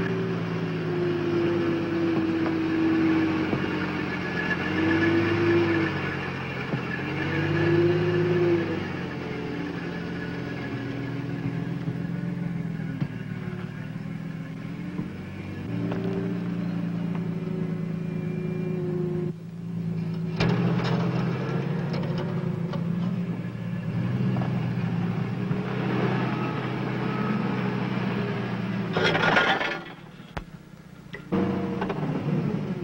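Allis-Chalmers forklift's engine running under load as it lifts and turns a car around, its note rising and falling again and again. A short louder burst of noise comes near the end.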